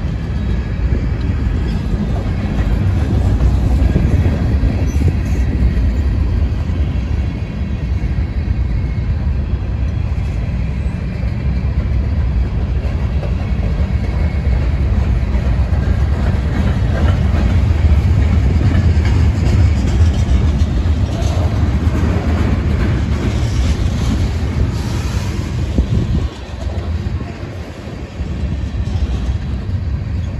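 Freight cars (covered hoppers, a gondola, then tank cars) rolling past at close range: a steady, loud rumble of steel wheels on rail. The sound dips briefly a few seconds before the end.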